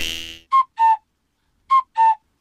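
A whistle-like sound effect: two short notes, the second slightly lower than the first, played twice about a second apart, with dead silence between. It comes in just after background music fades out.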